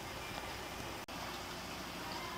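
Steady low background noise and hum with no distinct sound event; it drops out for an instant about a second in, where the picture cuts.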